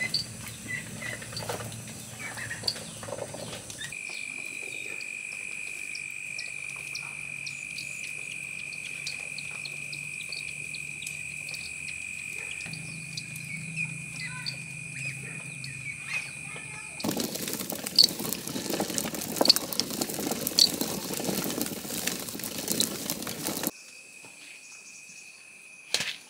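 Two-stone hand mill grinding grain, with a steady high-pitched insect drone through the middle. A loud, gritty crackling with sharp clicks comes near the end.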